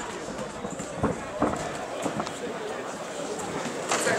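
Blows landing in a kickboxing bout: a few sharp hits, two of them close together about a second in, with weaker ones later, over the steady murmur of a sports hall.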